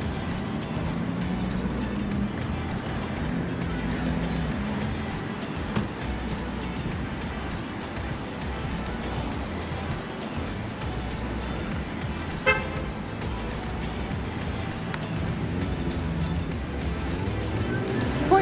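Low background music over a steady rumble of road traffic, with one short car-horn toot about twelve seconds in.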